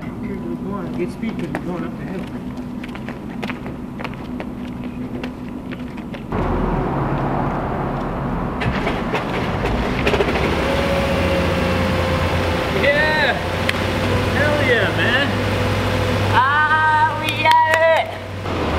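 A car engine running at idle, becoming louder and deeper about six seconds in, with men's voices calling out briefly in the second half.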